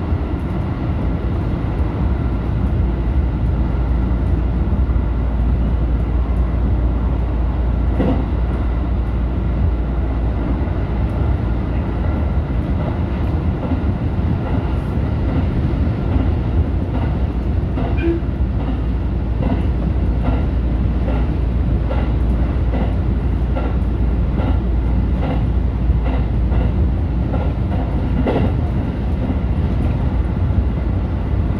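JR Central 313 series electric train running at speed, heard from inside the driver's cab: a loud, steady rumble of wheels on rail. From about halfway through, a regular clack comes in roughly once a second as the wheels pass over rail joints.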